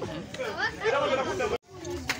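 People chatting, with the sound cutting out for a moment near the end.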